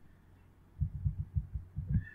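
A quick, irregular run of about seven dull, low thumps over the second half, over a faint steady hum.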